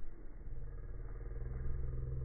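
A motor vehicle's engine running, a low steady rumble that rises slightly in pitch about half a second in.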